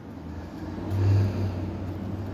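A car driving past: a low engine and tyre rumble that swells to its loudest about a second in, then eases off.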